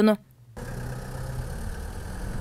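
Street traffic: car engine and tyre noise as a car drives along the road, a steady low rumble starting about half a second in.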